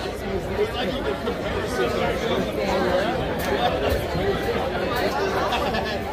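Chatter of several voices at once with no clear words, and no music playing; a few light clicks come through near the middle and toward the end.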